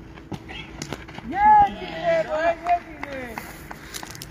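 Cricket players shouting across an open ground: drawn-out, high-pitched calls about a second in that run on for about two seconds, with a few short sharp knocks among them.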